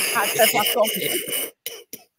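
A man laughing hard into the microphone, breathy and cough-like, in a run of short pulses. The laughter dies away about a second and a half in, leaving a few faint clicks.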